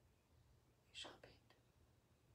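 Near silence: room tone, broken about a second in by one brief, faint whispered sound.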